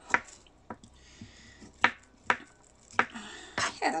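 Knife cutting a piece of ginger root on a cutting board: sharp, irregular clicks of the blade striking the board, about six or seven of them.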